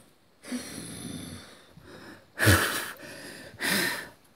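A person blowing and huffing hard with the voice, like a wolf blowing a house down: one long breathy blow, then two short, louder puffs, the first of them the loudest.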